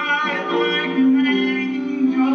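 Music: a voice singing long held notes over instrumental accompaniment.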